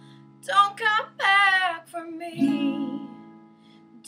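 A woman singing a held, wavering phrase over an acoustic guitar. A strummed chord comes about two and a half seconds in and rings out.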